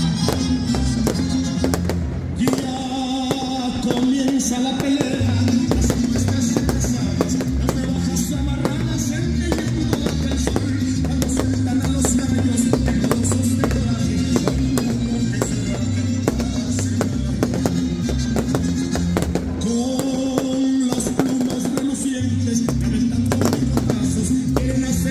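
Music with singing, mixed with a fireworks display: frequent sharp bangs and crackles of aerial shells bursting.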